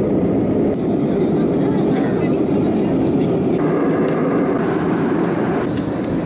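Loud, steady rush of a jet airliner's engines and airflow heard from inside the cabin during the climb after takeoff. The sound turns duller about three and a half seconds in.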